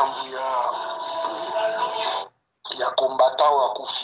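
A person's voice heard over an online video call, with a faint steady tone under it; the audio drops out completely for a moment a little past two seconds in.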